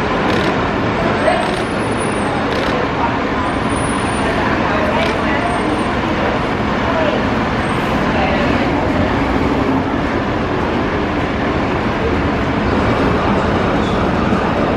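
Steady city traffic noise with indistinct voices mixed in.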